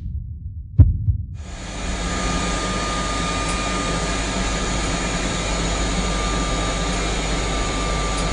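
A single thump about a second in, then the steady rushing of a whole-body cryotherapy cabin blowing nitrogen-chilled air, with a faint steady whine over it.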